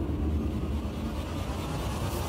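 A low, steady rumbling drone of dramatic background score under a silent reaction shot.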